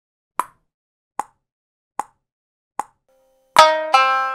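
Four short clicks, evenly spaced a little over one per second, as a count-in. Then near the end a shamisen comes in with a loud struck note that rings on with bright overtones.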